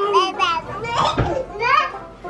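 Young children's high-pitched voices: playful non-word vocal sounds from a boy and a baby at play.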